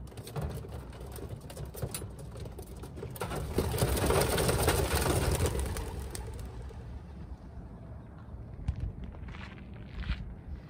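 A flock of racing pigeons taking off from a release crate, many wings flapping together. The flapping swells to a peak about four seconds in and fades as the birds fly off, after a few sharp clicks from the crate early on.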